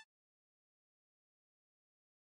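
Silence: the soundtrack has ended, with the music cutting off right at the start.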